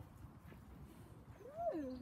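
Faint background at first. About one and a half seconds in, a child's wordless drawn-out vocal sound starts, rising and then falling in pitch.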